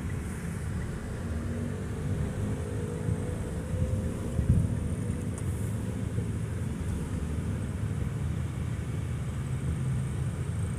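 Car cabin noise while driving: a steady low rumble of engine and road, with a faint engine tone above it. It briefly gets louder about four and a half seconds in.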